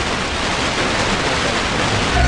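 Steady hiss from an FM radio receiver tuned to 88.3 MHz with only a very weak signal, about 20 dBf, too weak to lock stereo. This is the background noise between meteor-scatter bursts.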